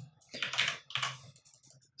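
Computer keyboard keys being tapped in two short quick clusters, followed by a few faint clicks.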